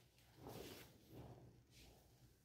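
Near silence with two faint, soft rustles of cloth as a length of fabric is unfolded and spread flat on a cutting mat.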